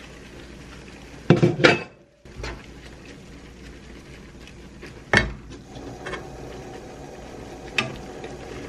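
Pots-and-pans clatter in a loud double crash about a second in, fitting the glass lid being set down. After it, a metal ladle and wooden spatula clink and scrape against a wok while tossing noodles, with a few sharp clinks.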